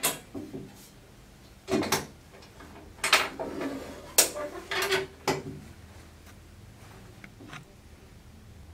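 Metal clicks and clanks of a WCS tube trap being handled on a table: the trap's strike bar, dog and safety knocking against its metal tube. About six sharp clacks come one at a time through the first five seconds, with a fainter one near the end.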